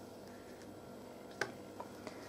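Quiet room tone while a needle and thread are worked through a crocheted toy, with one short faint click about one and a half seconds in and a weaker one just after.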